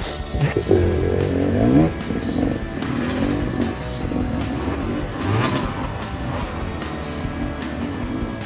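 Off-road trail motorcycle engine revving up and down under load as the rider climbs a steep slope, loudest in the first two seconds. Background music plays over it.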